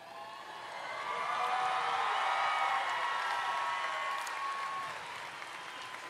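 A large crowd cheering and clapping, many voices at once, swelling over the first couple of seconds and fading toward the end.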